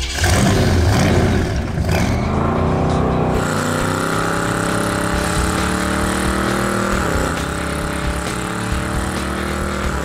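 500-cubic-inch Cadillac V8 in a 1973 AMC Gremlin revving hard and held at high revs during a burnout, the rear tyres spinning and smoking. The engine note holds steady, dips briefly about seven seconds in, then comes back up.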